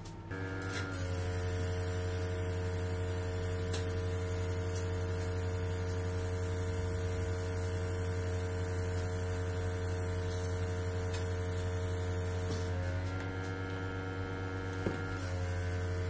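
An airbrush compressor starts up and runs with a steady electric hum. Over the hum comes the hiss of air and food colour spraying from the airbrush, from about a second in until a couple of seconds before the end. The spray eases off briefly, then picks up again.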